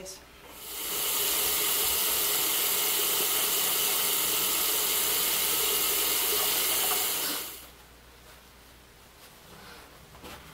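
Bathroom tap running into a sink: a steady rush of water that swells in about a second in and stops at about seven and a half seconds.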